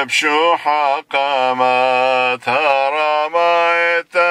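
A man chanting a Syriac liturgical hymn (onyatha) solo, with long held and ornamented notes. The phrases break off briefly about one second and two and a half seconds in.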